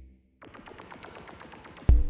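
Electronic background music with a drum-machine beat fades out at the start and comes back in near the end. Between, a faint crackling hiss is heard on its own.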